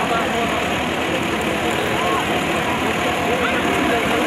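Tractor engine running at idle close by, a steady low chugging, with men's shouts and calls from a crowd scattered over it.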